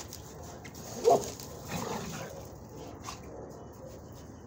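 A dog gives one short, loud bark about a second in, during rough play with another dog, followed by a fainter sound about a second later.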